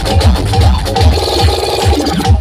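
Loud electronic dance music from a DJ sound system, driven by a heavy bass kick drum at about two and a half beats a second.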